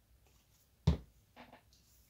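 A single sharp knock of something set down on the wooden worktop about a second in, followed by a lighter tap, as small parts are handled.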